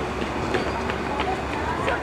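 People talking in low voices over the steady low rumble of idling street traffic.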